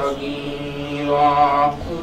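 A man's voice intoning an Arabic supplication (dua) in a slow, drawn-out chant, one long held line that breaks off near the end.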